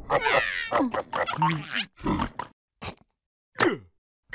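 Cartoon insect characters making wordless vocal sounds: a quick run of short grunts and squeaky exclamations, a pause around three seconds in, then one falling squeal near the end.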